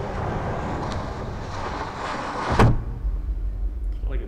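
Film soundtrack sound effects: a steady rushing noise, then one sharp, loud hit a little past halfway, followed by a low rumble.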